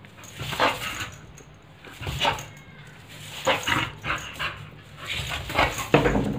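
Pit bull barking in play at a broomstick: short barks about a second apart, the loudest near the end.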